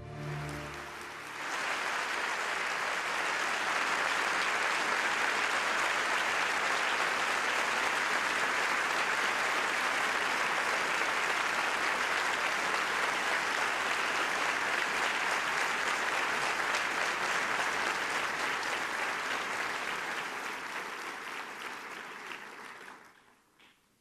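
Large audience applauding in a hall. The applause builds over the first two seconds, holds steady, and dies away a second or two before the end.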